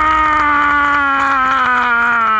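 A man's long held yell, sliding slowly down in pitch and wavering near the end.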